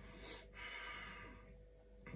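A person nosing whisky in a glass: one long, faint sniff through the nose, starting about half a second in and lasting about a second.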